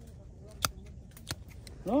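Hand pruning shears snipping grape-bunch stems during harvest: two sharp clicks about two-thirds of a second apart, with a few fainter ticks around them.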